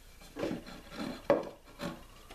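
A wooden strip scraping and knocking against a wooden workbench and leather as it is shifted into place: four short scrapes and knocks, the sharpest and loudest just past the middle.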